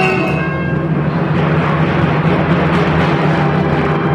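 Symphony orchestra playing a loud, dense sustained passage: a rushing wash of sound over a steady held low note, with the clear melodic lines giving way to it about half a second in.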